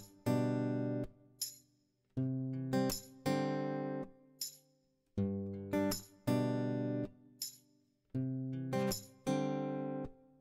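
Background music: an acoustic guitar playing slow chords, each left to ring and die away, in phrases of about three seconds separated by brief silences.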